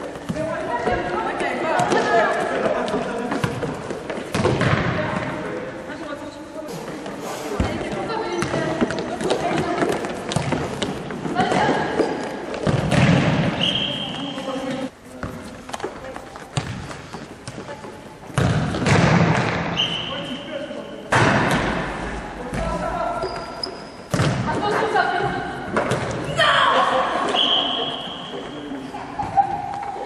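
Indoor futsal play in a gymnasium: players' voices shouting and calling, with the ball thudding from kicks and bounces on the wooden floor. A few brief high-pitched tones cut through now and then.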